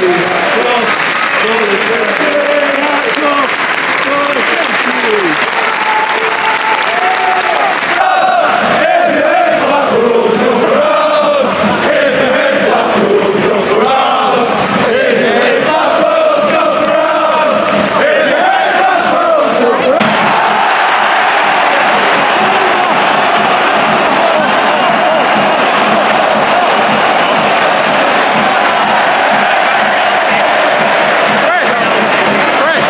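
Football crowd in a stadium singing a chant together, a mass of voices carrying a tune. About twenty seconds in, the singing gives way to a steady crowd roar.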